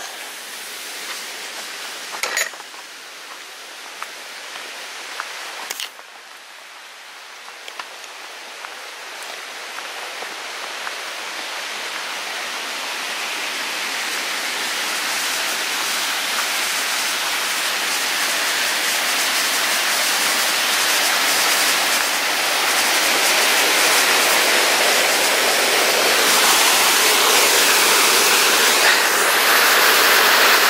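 Small woodland waterfall and stream rushing, growing steadily louder from about a quarter of the way in until it fills the sound. A couple of sharp knocks come in the first few seconds.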